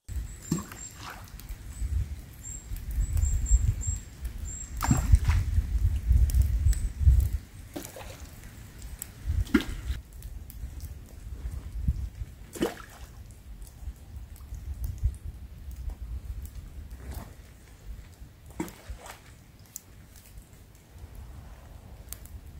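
Rain dripping in light drizzle, single sharp drips falling every few seconds, over a low rumble that is strongest in the first seven seconds.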